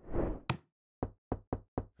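A short breathy whoosh, then one sharp knock and a run of four quick knocks, about four a second: a knock-on-a-door sound effect.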